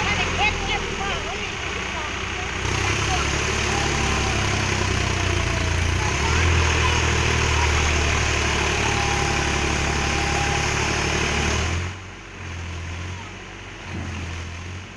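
Tractor engine running while its tipping trailer dumps a load of sand, the sand sliding off with a steady hiss. The hiss drops away about twelve seconds in, leaving the engine running on its own.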